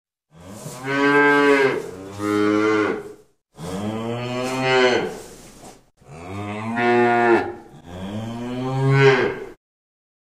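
Cattle mooing: a string of drawn-out moos, each one to two seconds long, with short breaks between them.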